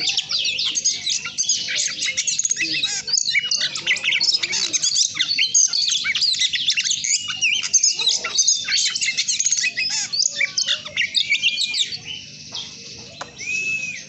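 Oriental magpie-robin in full, rapid song: a dense run of quick, high whistled notes and trills that stops about twelve seconds in, followed by a single arched whistle near the end. The bird sings strongly even though it has lost its wing and tail feathers.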